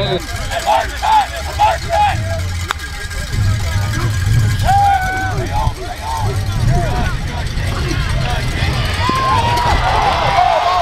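Indistinct shouts and calls from players and spectators around a football field, many short overlapping voices with no clear words, over a steady low rumble.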